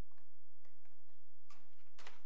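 Several light clicks and taps, about one every half second, the loudest near the end, over a steady low electrical hum.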